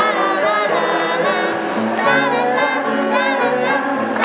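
Harmonica played live from a neck rack over a strummed acoustic guitar, with the harmonica's reedy chords sliding between notes.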